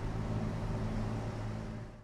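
Steady low hum of street traffic, fading out near the end.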